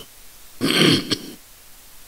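A man clearing his throat once into a close microphone: one rough, noisy burst a little under a second long, starting about half a second in.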